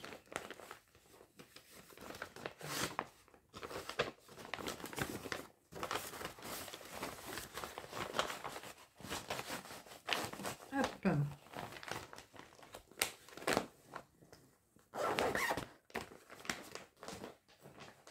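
Plastic zip-top bag crinkling and rustling as it is handled and opened, in irregular bursts, with the busiest rustling about fifteen seconds in.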